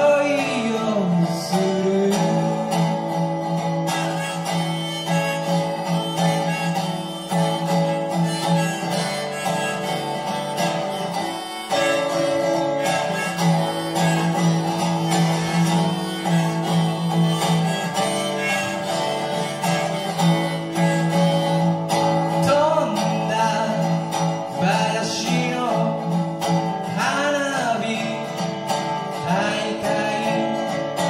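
Live music: a resonator guitar strummed steadily with a harmonica in a neck holder playing sustained, bending notes over it, with a short break about eleven and a half seconds in.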